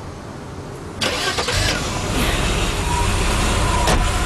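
A car engine starting about a second in, then running at a steady idle.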